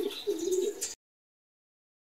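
Domestic racing pigeon cooing, a low wavering call that cuts off suddenly about a second in.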